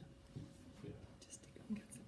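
Faint talking among a few people in a room, too quiet for the words to be made out.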